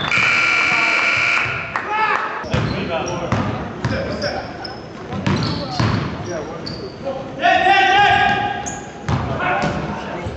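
Basketball game on a hardwood gym floor: the ball bouncing, short sneaker squeaks, and players shouting, echoing in the large hall. A loud call comes near the start and another about seven and a half seconds in.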